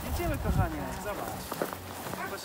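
Indistinct voices with footsteps on a snowy road.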